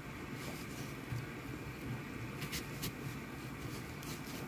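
Kitchen knife cutting a peeled onion into quarters on a wooden cutting board: faint crisp cuts, with two short sharp scrapes about two and a half seconds in, over a low steady background hum.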